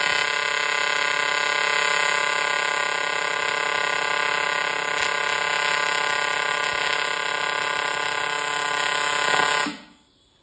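AC TIG welding arc on aluminium, using the welder's high-frequency setting: a steady buzz with a strong hiss over it. It cuts off sharply near the end as the arc is broken.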